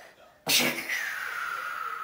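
A young child's sudden shrill cry, opening with a breathy burst about half a second in and then a high note that slides slowly down for about a second and a half: a play battle shout.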